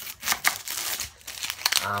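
Dry, papery onion skin crackling and tearing as it is cut and peeled off the onion with a knife, a run of short crinkles.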